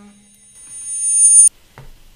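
High-pitched audio feedback squeal: several steady high tones that build louder for about a second, then cut off suddenly.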